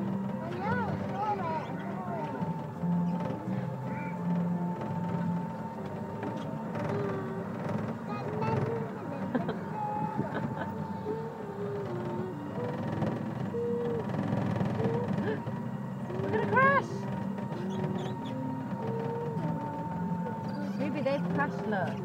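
Background music with distant voices, over a steady high-pitched hum; a short rising cry stands out about two-thirds through.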